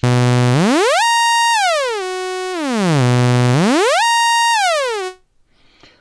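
AddStation additive synthesizer app sounding one sustained, buzzy note that loops through three blocks with different pitch settings: it holds a low pitch, glides up over three octaves, glides down to a middle pitch, then back to the low one, gliding smoothly between steps. The pattern runs about twice and cuts off about five seconds in.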